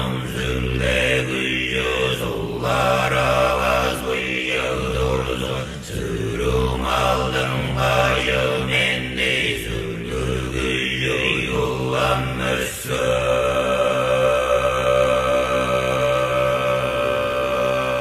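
Buddhist monks chanting in unison in very deep voices, a low droning chant rich in overtones; from about 13 seconds in it settles on one long held tone.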